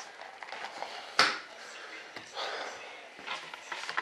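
Workshop handling noises as a paper cup of mixed epoxy is put down on a workbench: one sharp tap about a second in, then faint rustles and a few light ticks.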